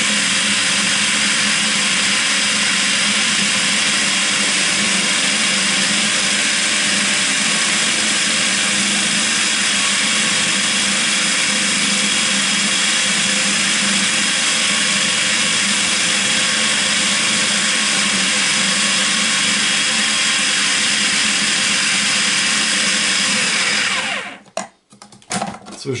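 Electric food processor motor running steadily under load, its mixing attachment working minced meat, onion and bread into sausage meat; it switches off about two seconds before the end.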